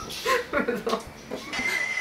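High-pitched, stifled laughter through a hand over the mouth, with a whinny-like squeal to it, followed near the end by a short steady high tone.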